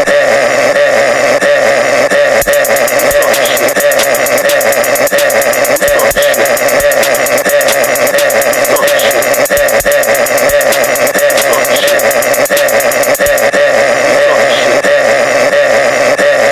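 Extremely loud, heavily distorted 'ear rape' meme audio: a steady blaring drone. A rapid stream of clicks runs through it from about two seconds in until near the end.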